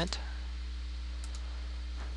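Two quick computer-mouse clicks, a double-click, about a second in, over a steady low hum.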